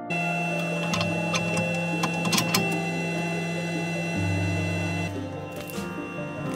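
Motors of an xTool M1 desktop laser and blade cutter whining in steady tones whose pitch shifts in steps a few times, with a few light clicks, under background music.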